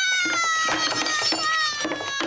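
A woman's long, high-pitched scream, held for about four seconds with its pitch slowly sinking, with a few sharp knocks underneath.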